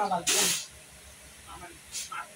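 A voice overlaid by a short, loud hiss in the first half second, then faint, brief voices.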